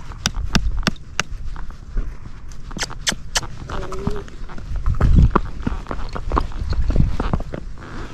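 Missouri Fox Trotter's hooves clip-clopping on a paved road as the horse moves on, in irregular sharp hoofbeats over a low rumble.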